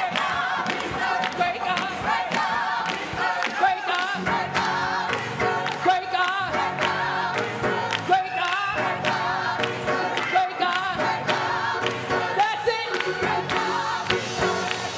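Gospel choir singing, with hands clapping steadily on the beat.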